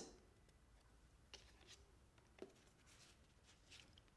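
Near silence: room tone, with a few faint brief clicks.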